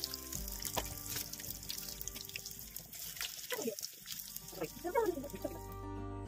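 Battered banana peppers deep-frying in hot oil, a steady crackle and sizzle, under soft background music with long held notes.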